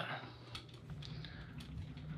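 A few faint, light clicks scattered over low room noise.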